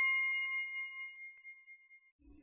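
A bright, bell-like notification ding, a sound effect, ringing out with several pitches at once and fading away over about a second and a half.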